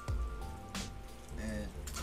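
Rubbing alcohol poured from a bottle into an opened PC power supply, running and dripping over its circuit board, under background music.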